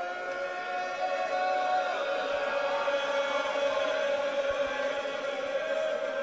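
A crowd of mourners chanting together in long, held notes: many voices overlapping in one slow, sustained lament.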